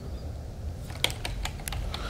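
A low, steady rumble, and from about halfway through a run of light, irregular clicks.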